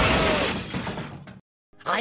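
A loud crash, something shattering, that fades out over about a second and a half and then cuts off abruptly.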